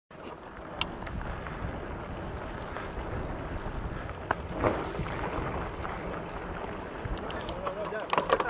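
Mountain bike with 27.5-plus tyres rolling over a dirt trail, heard from a camera on the rider: a steady low rumble of tyres and wind on the microphone, with a few sharp clicks and rattles from the bike and a run of clicks near the end.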